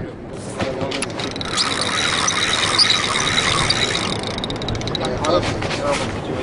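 Fishing reel being cranked to bring the line in: a steady whir with a thin high tone through it, then rapid clicking near the end.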